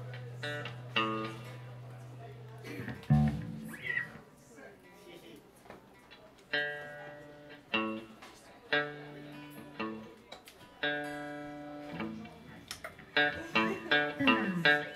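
Live electric guitars and bass in a sparse, quiet passage. A low note is held for the first few seconds, then single chords ring out about every two seconds. Near the end the guitars come in louder and busier.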